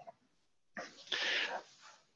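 A person's sneeze-like burst of breath about a second in, short and noisy in two quick parts, heard over a video-call line.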